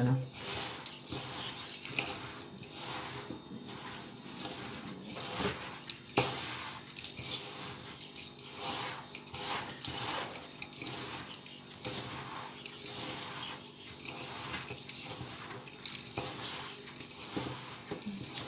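Hands kneading a moist, crumbly mixture of crushed biscuits and peanuts in a ceramic bowl, a soft crunching rustle repeated in strokes about once or twice a second.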